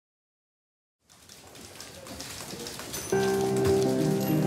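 Trailer soundtrack: after a second of silence, a dense crackle of clicks swells up. About three seconds in, music enters sharply with a sustained chord and becomes the loudest sound.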